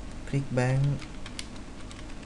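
Computer keyboard keys being typed: a quick run of keystrokes about a second in, after a brief spoken word near the start.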